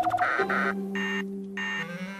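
Cartoon electronic machine sound effect for the photo booth: a fast run of beeps, then buzzing tones in bursts about every half second. Background music holds a low chord underneath.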